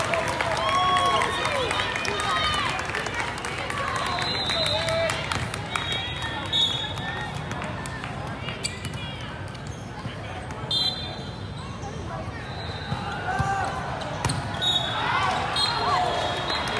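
Echoing volleyball hall during a rally: many players and spectators shouting and calling, with sharp smacks of volleyballs being hit and bouncing on the court floors. Short high-pitched tones cut through now and then.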